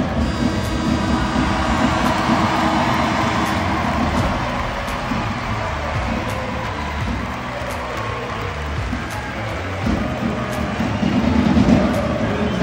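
Arena end-of-game horn sounding for about three seconds as the clock runs out on a 34–33 finish, over the noise of the handball crowd.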